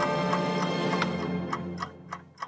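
Wind-up bell alarm clock ticking, about three ticks a second, over a held musical chord that fades away in the second half.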